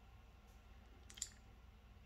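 Near silence, room tone with a faint low hum, broken by one short, sharp click about a second in.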